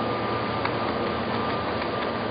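Room tone in a pause between speech: a steady hiss with a low hum and a faint, steady high whine.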